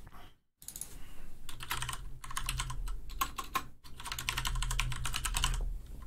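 Computer keyboard being typed on: a fast run of keystrokes lasting about five seconds, with a brief pause in the middle, as a track name is typed in.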